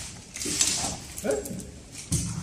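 Clicks and rattling of a motorcycle top case that doubles as a wheeled trolley, being worked by hand: its pull handle and fittings clatter. The clatter comes in two short bursts, the second a little past a second in.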